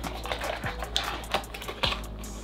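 A paperboard perfume box being opened by hand: a series of light clicks and scrapes of card as the top flap is lifted, a few each second.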